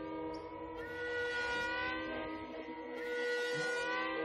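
Music score of long held notes layered over one another, with new notes coming in about a second in and again near three seconds, each sliding slightly down in pitch.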